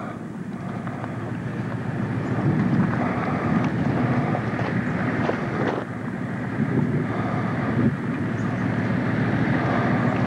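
Wind buffeting a camcorder's built-in microphone in a steady rumbling rush, with a few brief knocks from the camera being handled.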